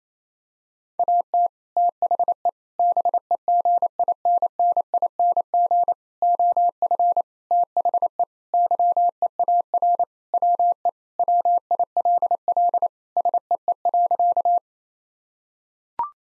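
Computer-generated Morse code at 28 words per minute: a steady single-pitch beep keyed on and off in quick dots and dashes, spelling out "At the beginning of the year, we will see." It starts about a second in and stops about a second and a half before the end.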